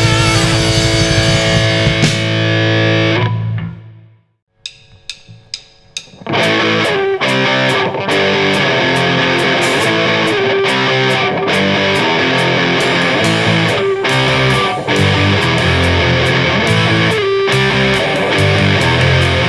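Live rock band with distorted electric guitars, bass guitar and drums playing loudly. The music stops about three to four seconds in, and after a brief silence a few evenly spaced sharp clicks lead into the full band starting again about six seconds in.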